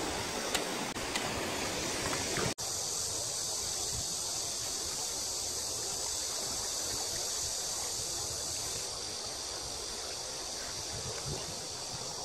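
Steady rush of shallow river water flowing, an even hiss, with a momentary gap about two and a half seconds in where the sound cuts.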